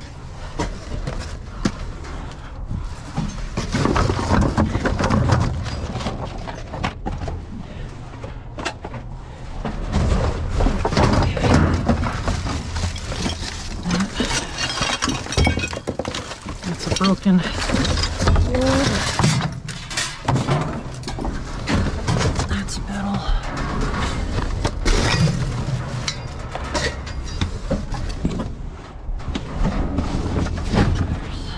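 Cardboard boxes and discarded items being shifted and rummaged through in a dumpster: cardboard scraping and crumpling, with objects knocking and clattering at irregular moments.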